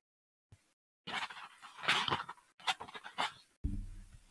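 Soft rustles of paper book pages being leafed through, mixed with breathing close to the microphone, in irregular bursts after about a second of silence, with a low bump near the end.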